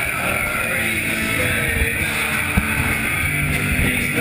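Punk rock band playing live and loud through a venue PA, with electric guitars and thumping drums, heard from among the crowd as a dense, muddy wall of sound.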